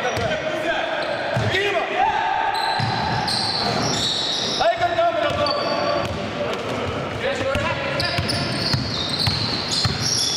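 A basketball being dribbled on a hardwood court, with players calling out to each other, in a large echoing gym.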